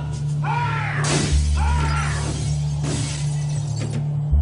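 Glass smashing and shattering, heard twice, over a steady low droning hum. Two short high cries that bend down in pitch come in between.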